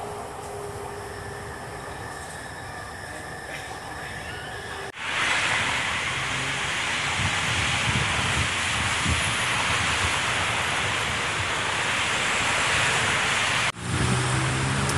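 Steady running noise inside a Bangkok Purple Line metro car, with a faint steady whine. About five seconds in it cuts to the louder, even rush of heavy traffic on a multi-lane road, with wind buffeting the microphone.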